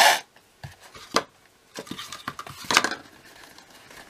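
Grosgrain ribbon being drawn through punched holes in a cardstock box, with a loud rasp right at the start, then a few light clicks and rustles as the paper box is handled.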